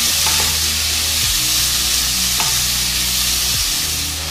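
Paprika-marinated turkey strips searing in a wok over high heat, giving a steady, loud sizzle as they are stirred with a wooden spatula.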